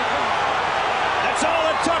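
Boxing arena crowd yelling and cheering loudly over a knockdown, many voices at once, with a couple of sharp clicks partway through.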